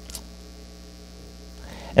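Steady low electrical mains hum, carried through the microphone and sound system, in a pause between sentences.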